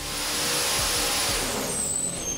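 Turbocharged 427-cubic-inch LS V8 running on an engine dyno: a loud rushing hiss of turbo air and exhaust over a low engine rumble, with a short high whistle near the end.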